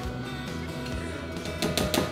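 Background music, with a few brief light clicks near the end.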